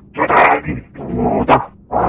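A dog barking several times in quick, rough bursts.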